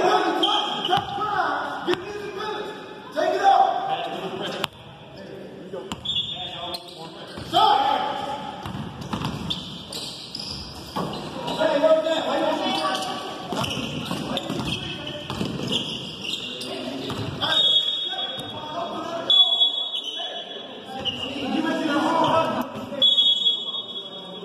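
Basketball bouncing on a gym's hardwood floor during a game, with indistinct voices calling out, all echoing in a large hall.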